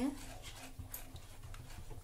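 Wooden spatula stirring thick, hot custard in a steel pot, with soft irregular swishing and scraping.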